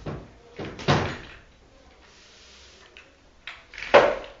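A few sharp knocks and bangs, each dying away quickly, with a loud one about a second in and the loudest just before the end.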